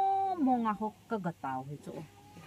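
A woman speaking in an impassioned voice, drawing out one word as a long held tone at the start, then going on in quick, broken phrases that trail off toward the end.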